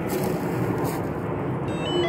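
Steady rushing noise with a constant hum, and near the end an electric scooter's electronic chime starts: a little tune of stepped beeps.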